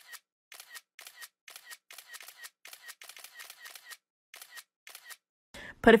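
A rhythmic series of short, sharp clicks, about three or four a second, with a brief pause about four seconds in. A woman starts speaking just before the end.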